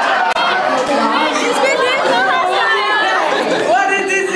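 A group of people talking over one another in excited chatter, mixed with laughter.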